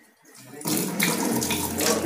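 Kitchen tap turned on about half a second in, then water running steadily from the tap onto hands rinsing a turmeric rhizome in the sink.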